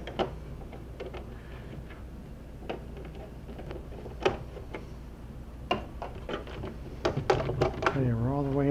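A screwdriver working screws loose in the plastic back cover of an HP Pavilion 23 all-in-one computer: a few scattered light clicks and taps, closer together near the end, over a steady low hum.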